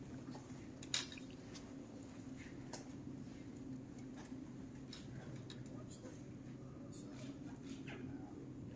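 Quiet indoor room tone: a steady low hum with scattered light taps and clicks, a sharper click about a second in.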